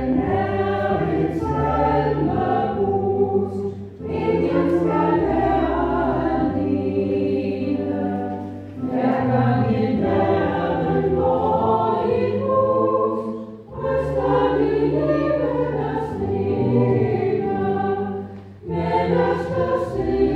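Small church choir singing a Danish hymn in phrases of about five seconds, each ending in a brief pause for breath.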